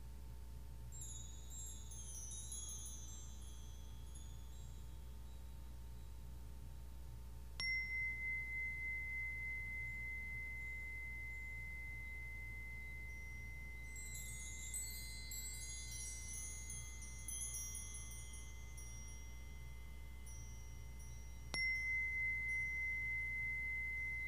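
Meditation chimes and a small bell. High tinkling chimes shimmer briefly, then a single high bell tone is struck and rings on for many seconds with a pulsing, wavering sound. The chimes shimmer again midway, and the bell tone is struck once more near the end.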